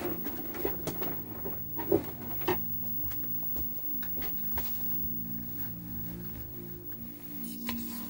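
Music playing from a 1980 Philips KT3 colour television's speaker as the set shows a test card, with two sharp knocks about two seconds in from the set being handled and turned around.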